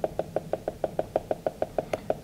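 Felt-tip marker tapping rapidly on a whiteboard, dotting marks in an even rhythm of about eight short taps a second.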